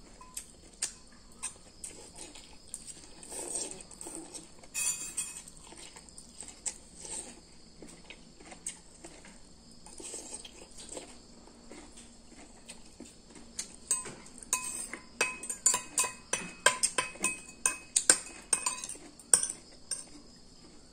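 Metal spoon and fork clinking and scraping against a ceramic bowl while eating, in scattered clicks that come thick and fast for the last few seconds.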